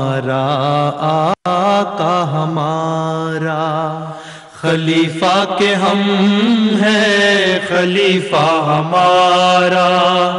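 Male voices singing an Urdu nazm (tarana) in long, drawn-out held notes. There is a momentary break about a second and a half in and a softer stretch just before the halfway point.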